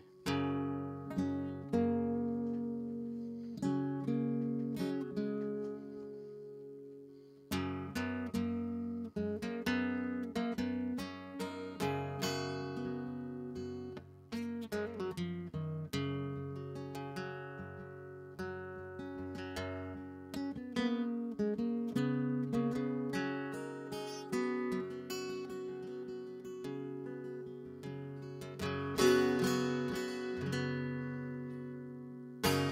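Solo acoustic guitar playing an instrumental introduction, with plucked notes and chords left to ring. About two seconds in the sound starts dying away, and a fresh chord comes in about seven and a half seconds in; the playing then carries on.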